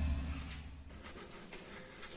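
Faint rustling and light clicks of paper mail envelopes being handled, under a low rumble that dies away over the first second.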